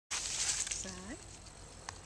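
Horse's hooves shuffling and rustling through dry fallen leaves as it steps sideways, loudest in the first half second, with a rider's spoken 'side' about a second in and a single sharp tick near the end.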